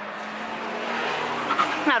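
A car driving past on the road, its tyre and engine noise swelling steadily louder.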